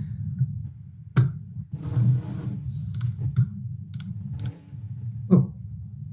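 About five sharp, isolated clicks and taps spaced irregularly, over a steady low hum.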